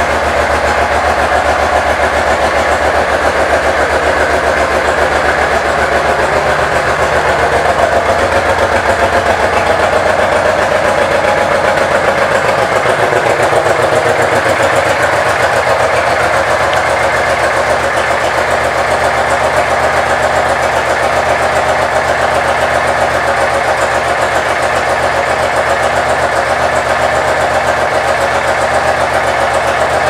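Honda VTX 1800's large V-twin engine idling steadily. About halfway through, the deepest low rumble drops away while the idle carries on.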